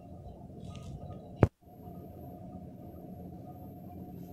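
Steady low background noise of the room, broken about one and a half seconds in by a single sharp click and a moment of dead silence where the recording is cut; after the cut the noise resumes with a faint high whine.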